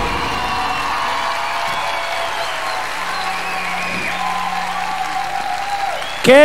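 Studio audience applauding, with music playing faintly underneath.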